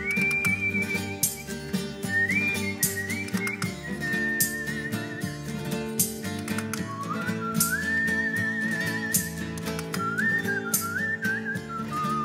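A whistled folk melody in the style of the Extremaduran goatherds' whistle, climbing in quick upward slides to held notes, with a warbling trill about eight seconds in. Strummed acoustic guitars keep a jotilla rhythm under it.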